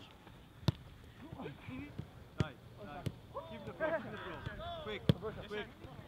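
A football being kicked in a passing drill on grass: a few sharp thuds a second or two apart, over players' voices calling in the background.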